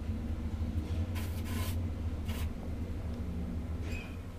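1980 ValmetSchlieren traction elevator car travelling between floors, heard from inside the car as a steady low hum. Two short hisses come in the first half.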